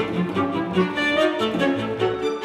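A chamber string group playing live contemporary music: bowed violins above, with low cello and double bass notes beneath. Several short notes sound together and change quickly.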